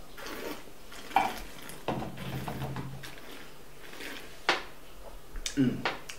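Port being sipped from a wine glass, with short noisy mouth and sipping sounds. A sharp glassy knock comes about four and a half seconds in as the glass is set down on the wooden table, followed by a closed-mouth "mm".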